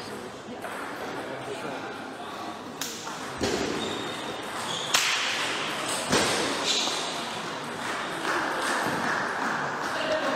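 Murmur of voices echoing in a large sports hall, with a few sharp knocks of table tennis balls on bats and tables, the loudest about five and six seconds in.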